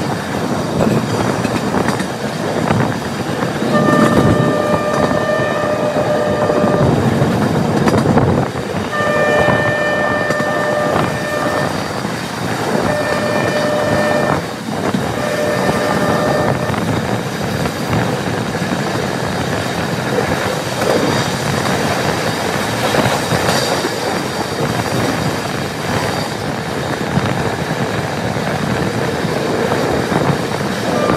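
Passenger train running along the track, heard from aboard, with its horn sounded in four blasts between about 4 and 16 seconds in: two long blasts followed by two shorter ones.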